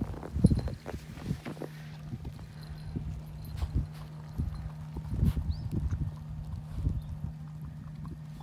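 Akita puppy eating snow: irregular crunching bites and licks at the snow, the sharpest about half a second in and around five seconds in, over a steady low hum.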